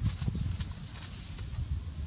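Two macaques wrestling on dry leaf litter: irregular soft thuds and scuffling as they tumble, with a few sharp leaf crackles or clicks.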